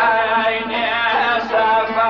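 A man singing a Kurdish song, holding long notes whose pitch bends and wavers.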